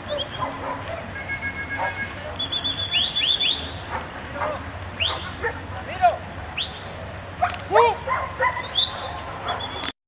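German Shepherd Dogs yipping and whining: a scatter of short, high calls that sweep up and down in pitch, thickest in the middle and latter part.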